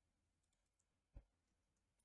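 Near silence: room tone with a single faint click about a second in.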